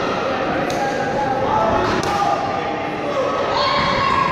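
Wrestlers' bodies thudding onto the boxing-ring style canvas, two dull impacts about two-thirds of a second and two seconds in, echoing in a large hall over crowd chatter.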